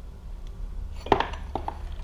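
Light metal clicks and clinks, one sharper click about a second in, as the motorcycle's rear-shock top mounting bolt is drawn out with needle-nose pliers.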